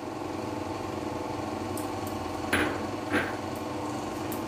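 A steady machine hum with several held tones runs throughout. Two short splashy rushes, about two and a half and three seconds in, come from water being poured from a small glass bowl into a steel tiffin box holding mustard paste and spices.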